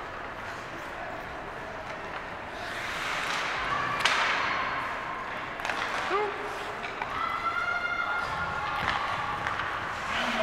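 Ice hockey game sounds in an indoor rink: skating and stick play on the ice, with one sharp knock about four seconds in. Spectators' voices call out, including one long held call in the second half.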